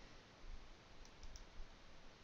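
Near silence with faint room tone and a few faint clicks about a second in.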